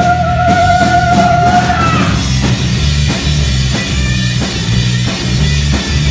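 Rock band playing live, with electric guitars, bass guitar and a drum kit keeping a steady beat. A high note held into the vocal microphone wavers, then bends downward and stops about two seconds in, leaving the band alone.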